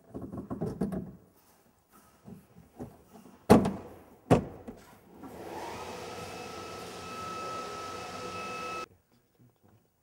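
Rustle and bumps of a car door trim panel being handled against the door, then two sharp knocks under a second apart as the panel is tapped onto the door. Then a steady machine whine rises in, runs for about three and a half seconds and cuts off suddenly.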